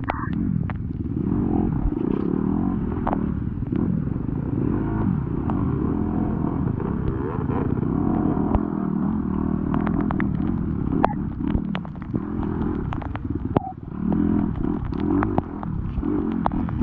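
Off-road dirt bike engine revving up and down as it is ridden, pitch rising and falling with the throttle, with frequent sharp clicks and knocks from the bike and the ground.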